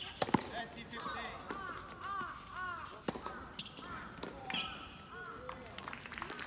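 Tennis rally on a hard court: sharp pops of the ball off the rackets and the court, the loudest just after the start and two more about three seconds in. Voices carry on behind them.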